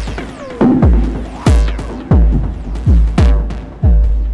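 Electronic drum beat run through a resonant Pas-Isel Eurorack low-pass filter. A heavy kick lands about every three-quarters of a second, and each hit is followed by a falling sweep and a ringing filter resonance tone as the cutoff knob is turned.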